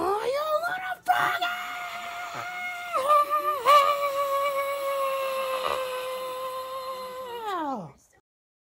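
A person's long, high-pitched scream, held for about seven seconds with a brief break about a second in, its pitch dipping twice and then falling away as it ends.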